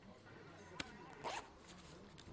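Mostly quiet room tone, broken by one sharp click and then a brief zip-like rasp, as of a bag's zipper being pulled.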